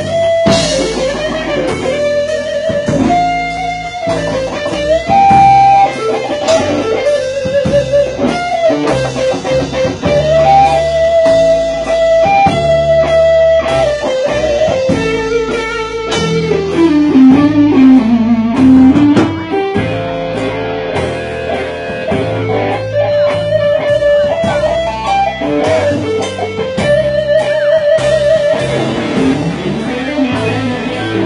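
Electric guitar playing an instrumental rock-blues lead, a single-note melody with bends, over bass and drums. A little past halfway the lead slides down into a low run and climbs back up.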